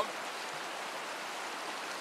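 Fast, shallow, rocky river running over and around boulders: a steady rush of water.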